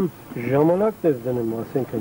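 A man's voice talking in short phrases; the speech recogniser wrote none of it down.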